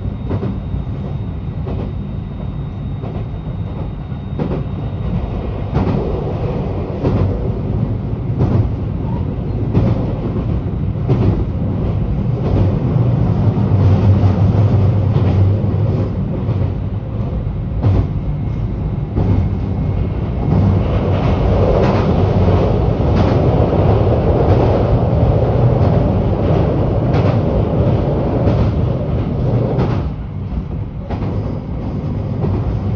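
A train carriage running along the track, heard from inside. There is a steady low rumble, louder in the middle and again in the second half, with sharp clacks about once a second as the wheels pass over rail joints.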